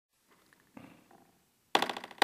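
Faint room noise, then near the end one sharp, loud strike of a gavel, ringing briefly: the first of a run of gavel raps calling the hearing to order.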